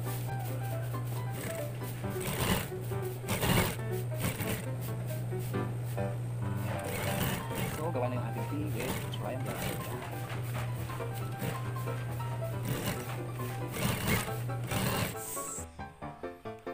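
Industrial sewing machine stitching down a jersey's collar piping, its motor giving a steady low hum that cuts off shortly before the end, with background music over it.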